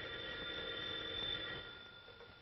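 Telephone bell ringing, a steady ringing tone that fades away over about two seconds.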